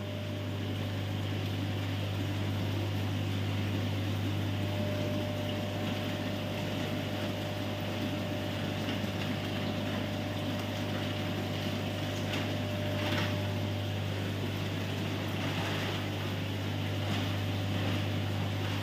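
Steady low hum under an even wash of noise from an aquarium room's running filtration pumps and air conditioning, with a few faint brief rustles about two-thirds of the way in.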